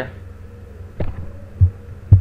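Steady low electrical hum on the recording, with a short dull thump about a second in and a louder low thump near the end.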